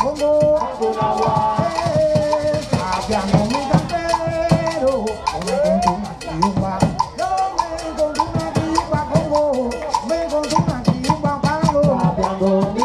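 Live Afro-Cuban rumba: conga drums and hand percussion keep up a dense, steady rhythm under sung vocal lines.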